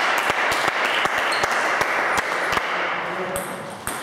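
Brief clapping after a table tennis rally ends, dying away near the end. Through it come light, irregular clicks of a celluloid table tennis ball bouncing.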